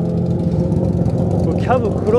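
A car engine idling steadily close by, a constant low hum.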